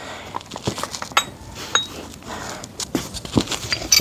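Silica sand pouring out of the bottom outlet of a sandblasting pot onto a tarp, a low hiss broken by many light clicks and small metal clinks as the outlet is worked loose.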